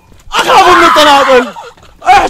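A man's loud, drawn-out vocal cry with a wavering pitch, lasting about a second and sliding down in pitch at the end.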